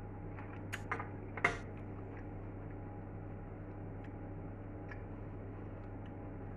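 A few light clicks and taps over a steady low hum, the sharpest about a second and a half in: a metal fork set down on a wooden chopping board.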